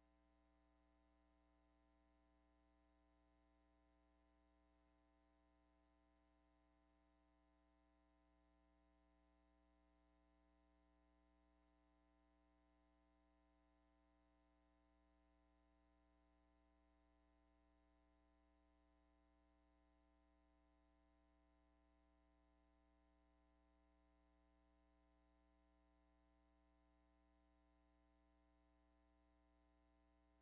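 Near silence, with only a faint steady hum.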